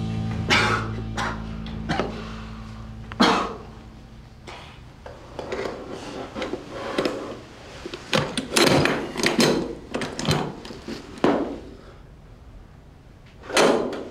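Soundtrack music dies away in the first few seconds. After it, handcuffs clink and knock against the table in scattered bursts, thickest about eight to eleven seconds in and once more near the end.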